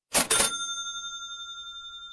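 Title-card transition sound effect: a quick double metallic hit, then a high bell-like ring that slowly fades.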